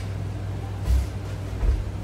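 Two dull thumps, about a second in and near the end, as someone shifts on a workout bench and takes hold of resistance-band equipment, over a steady low hum.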